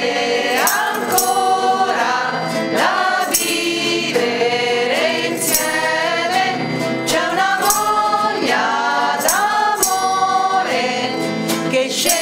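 A small group of women singing a traditional Christmas pastorella carol in unison. A metal triangle is struck about once a second, ringing over the voices.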